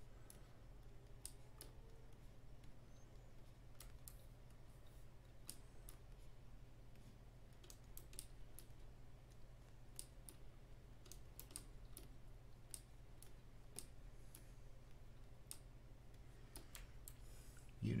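Faint, irregular clicks from someone working a computer's input devices at a desk, over a low steady electrical hum.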